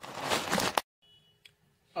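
A steady hiss from a saucepan on a gas stove as butter, cream cheese and milk are heated and stirred. It cuts off abruptly a little under a second in, and near silence follows.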